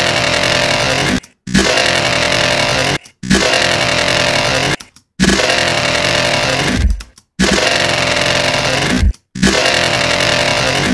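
Heavily distorted, gritty resampled dubstep bass sample replayed again and again, each play lasting under two seconds with a short silent break before the next. It is time-stretched in Ableton's Texture warp mode while the grain size is changed.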